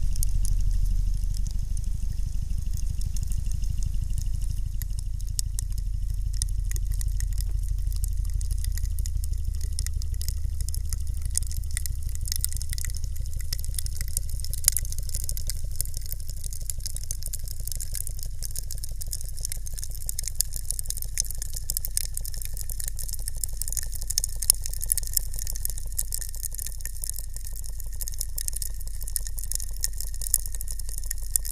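A block of ice in a water-filled pressure chamber crackling as the pressure rises, with sharp ticks and pops scattered through that come more often in the second half. Underneath is a low, rapid mechanical pulsing from the pump driving up the chamber pressure.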